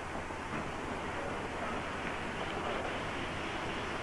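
Steady outdoor background noise, an even hiss like wind on the microphone, with a faint low hum underneath.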